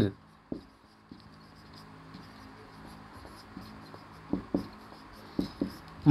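Marker writing on a whiteboard: faint scratchy strokes, with a few short, sharper squeaks of the tip, two pairs of them in the second half.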